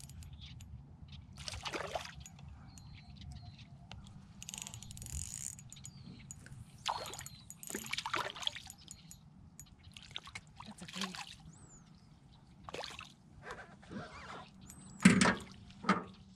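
A hooked panfish splashing and thrashing at the water's surface in irregular bursts, with the loudest splash near the end.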